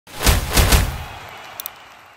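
Logo-intro sound effect: three heavy hits in quick succession in the first second, fading out, then two short clicks about a second and a half in.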